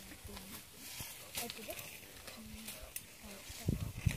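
Faint, low voices murmuring, with scattered soft clicks. Near the end a loud, crackling low rumble sets in.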